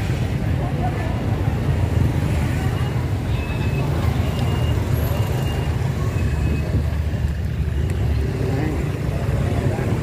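Busy street traffic of motorbikes and scooters, heard from a moving bicycle, as a steady low rumble with a few short, faint high beeps.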